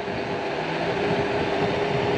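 ANCHEER 14-inch folding e-bike riding on asphalt: wind and tyre noise with a steady whine from its 500 W brushless motor under power.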